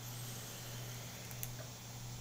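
Quiet room tone while a vape pen is drawn on: a steady low hum and faint hiss, with one small click about one and a half seconds in.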